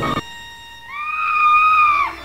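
Organ music cuts off abruptly, and a moment later a woman's high-pitched scream rises and is held on one note.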